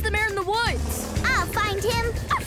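A high-pitched cartoon voice speaking over background score music with a low pulsing beat.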